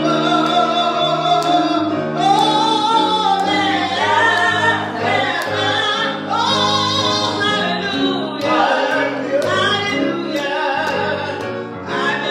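A woman singing a gospel worship song into a handheld microphone, in long held notes that waver in pitch, over a steady low accompaniment.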